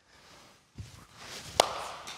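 Wooden baseball bat striking a soft-tossed baseball about one and a half seconds in: a single sharp crack with a short ring. A softer knock comes just before it.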